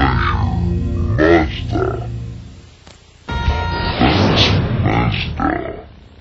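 Closing logo jingles from two Mazda TV commercials, each music with a voice delivering the tagline. The first fades out just before the three-second mark, and the second starts abruptly right after and fades near the end.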